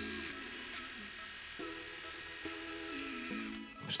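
Soft background music over the steady buzz of the Polaris PMR 0305R rotary electric shaver running as it shaves.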